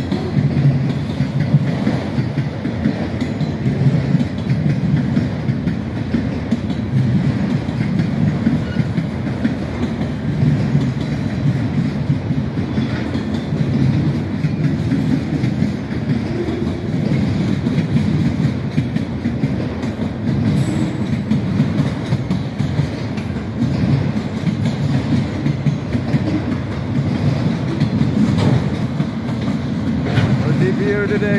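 Freight train of autorack cars rolling past, its wheels running on the rails in a steady, continuous low sound.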